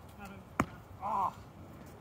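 A single sharp hit from a foam-padded boffer weapon, about half a second in, followed by a brief shout from a player.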